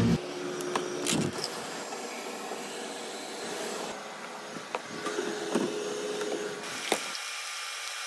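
A steady background hiss, with a few light clicks and knocks of plastic supplement tubs being handled on a kitchen counter.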